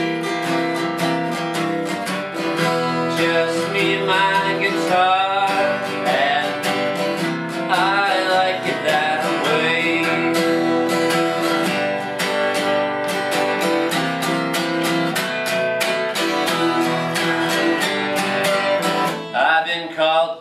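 Acoustic guitar strummed in a steady rhythm in an instrumental passage of a country-punk song, with a higher, wavering melody line over it in places.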